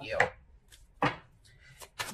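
A single sharp tap on a tabletop about a second in, followed by a few faint clicks near the end, as tarot cards are handled while one is drawn.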